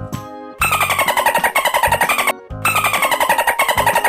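Dolphin calls: two bursts of rapid clicking chatter, each falling in pitch, over light background music.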